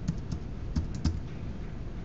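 Typing on a computer keyboard: a run of separate key presses, most of them in the first second, as a password is entered.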